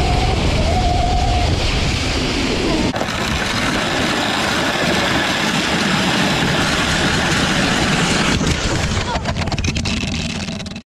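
Wind rushing over a sled-mounted camera's microphone and runners scraping over snow on fast downhill sled runs. A long, high-pitched squeal is heard in the first second and a half. The sound changes abruptly about three seconds in, and a cluster of sharp knocks comes near the end as the ride slows.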